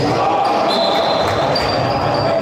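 Handball game sounds on an indoor court: the ball bouncing and two high squeaks of players' shoes on the floor in the second half, over voices in the hall.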